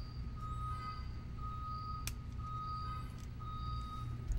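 An electronic beep repeating about once a second, each beep about half a second long at one steady pitch, over a low steady hum. A single sharp click about two seconds in.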